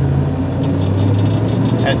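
Engine of a 1965 Ford Mustang fastback running at a steady low pitch while the car is driven, heard from inside the cabin.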